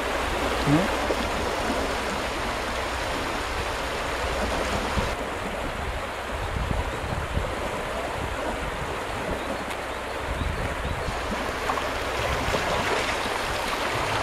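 A small river in spring flood rushing and splashing over shallow dolomite-ledge rapids: a steady, unbroken roar of moving water.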